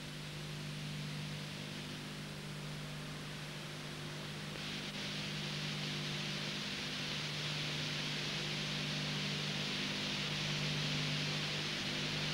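Steady hiss with a low steady hum, the signal noise of an old videotape recording with no programme sound on it; the hiss gets louder about four and a half seconds in.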